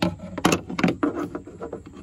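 Hard plastic clacks and knocks as the cabin air filter's plastic tray is picked up and handled. There are several sharp knocks in the first second, the loudest about half a second in, then quieter handling.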